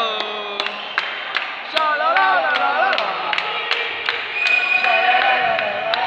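A handball bouncing on a sports hall floor, sharp knocks about two or three a second, echoing in the hall. Spectators and players shout over it.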